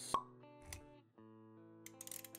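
Intro music with held notes. A sharp pop comes just after the start and a smaller click about three quarters of a second in, and the music drops away briefly just past the middle.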